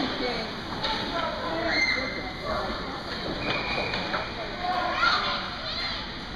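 Young children's voices chattering and calling out over one another in an indoor ice rink.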